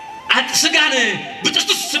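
A man talking, with chuckling in the voice.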